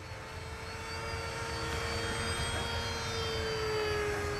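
RC model airplane's motor and propeller whining steadily as it flies nose-up, growing slowly louder, with the pitch sagging slightly near the end.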